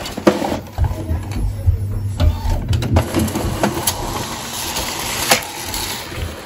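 Epson ET-16600 EcoTank printer running its print-head cleaning cycle: a low motor hum for a few seconds, with clicks and knocks from the mechanism.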